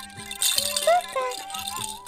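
A baby's toy rattle shaken repeatedly, giving a high-pitched rattling, over background music.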